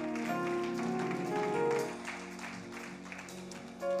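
Sustained keyboard chords playing under the service, the notes changing a couple of times, with some hand clapping through them.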